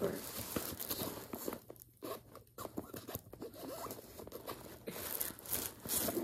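Irregular rustling and light clicks as items are handled and slipped into the pockets of a handbag, with the lining brushing against the hand.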